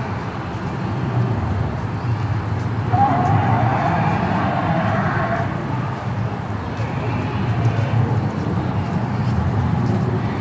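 Recorded dinosaur roar played through the exhibit's loudspeaker beside an animatronic dinosaur, over a continuous low rumble. A louder roar swells about three seconds in and lasts roughly two and a half seconds. It sounds fake, plainly canned audio from a stereo.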